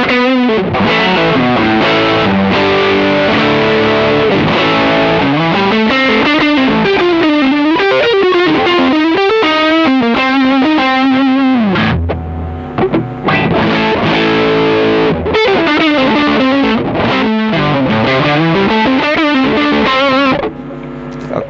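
Squier Bullet Stratocaster with Kin's pickups, neck pickup selected, played through a distortion pedal: lead lines of sustained, bent notes with vibrato, broken by a short pause about twelve seconds in.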